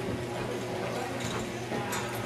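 Hoofbeats of a ridden horse moving on the dirt footing of an indoor arena, over a steady low hum.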